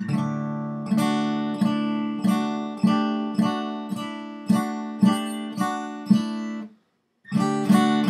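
Acoustic guitar strummed on an open D chord, the pinky added and lifted on the high E string to vary it, one strum about every half second. The strumming breaks off briefly near the end and then starts again.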